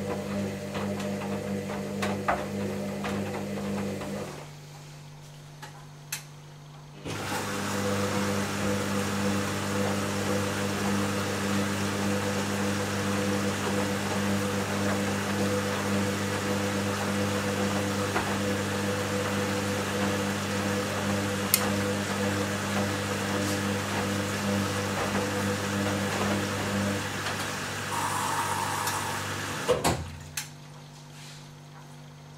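Hoover DynamicNext DXA 48W3 front-loading washing machine tumbling its drum in the wash phase, with a steady motor hum and water sloshing. The drum stops about four seconds in, rests for nearly three seconds, then starts again and keeps turning.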